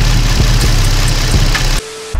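Nissan 350Z's VQ35DE V6 engine idling steadily with the coolant bleeder valve being worked to purge air from the cooling system. Near the end the engine sound cuts off abruptly, replaced by a short, quieter steady tone.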